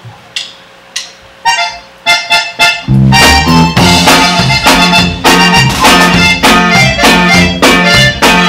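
A conjunto band starts a polka: two sharp clicks, then a few short accordion notes as a lead-in, and about three seconds in the full band comes in loud, accordion on top of bass and drums in a steady, bouncing polka beat.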